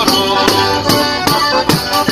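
Diatonic button accordion (organetto) and jingled tambourine (tamburello) playing a castellana marchigiana, a Marche folk dance tune, with the tambourine striking a steady beat about two and a half times a second.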